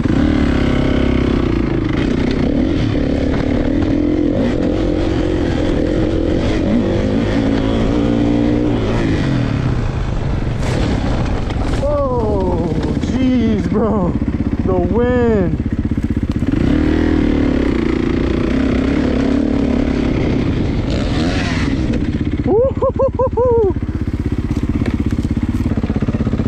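Kawasaki 450 four-stroke single-cylinder dirt bike engine running under load with the throttle rising and falling. Several quick rev blips come in the second half.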